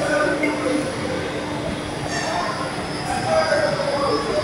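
Rotary kiln turning: its steel riding ring rolls on the support rollers with a steady low hum and intermittent metal-on-metal squealing tones.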